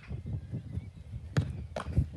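A Gaelic football shot and caught: two sharp thuds about half a second apart in the second half, over dull thudding of feet on grass.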